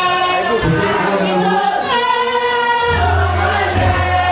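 A group of voices singing a chant together in long held notes, the kind sung for the lwa at a Vodou ceremony; a deep steady low tone joins near the end.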